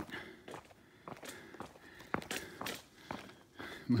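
A hiker's footsteps: irregular, fairly quiet steps with a few sharper knocks, walking along a woodland trail.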